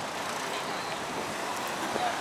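Steady road traffic noise from cars passing on a multi-lane city road.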